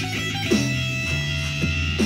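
Electric guitar played through an amplifier: chords struck about half a second in and again about a second later, each left to ring on.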